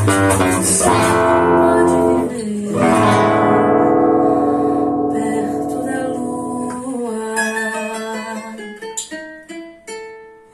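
Rozini seven-string nylon-string acoustic guitar (violão de 7 cordas) playing samba-style accompaniment: full ringing chords, then from about seven seconds in a quieter run of single plucked notes that thins out and fades near the end.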